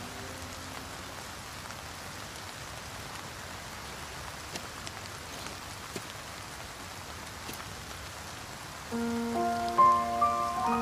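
Steady rain falling on wet pavement, an even hiss with a few faint drop ticks. About nine seconds in, soft background music with held notes comes in over the rain.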